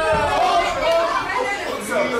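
Several voices calling out and talking over one another: ringside spectators and cornermen.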